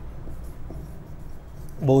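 Marker pen writing on a whiteboard: faint strokes over a low, steady room hum. A man's voice comes in near the end.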